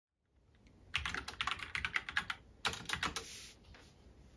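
Typing on a computer keyboard: a quick run of key clicks starting about a second in, a short pause, then a second run that trails off near the end.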